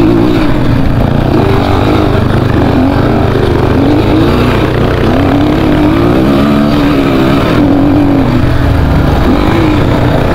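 Dirt bike engine running under way, its revs rising and falling again and again as the throttle is worked over a rough, rutted dirt trail.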